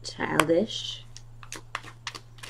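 A tarot card being handled and laid down: several sharp clicks of long fingernails against the card, one about half a second in and then a quicker run near the end, over a steady low hum.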